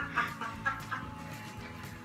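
Laughter in short, quick bursts during the first second, fading out, over a steady low hum from the inflatable suit's blower fan.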